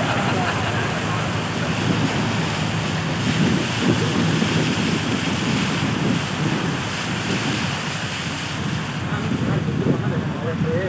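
Steady rushing noise of a vehicle moving through floodwater, water washing around it, mixed with wind buffeting the microphone at the open window.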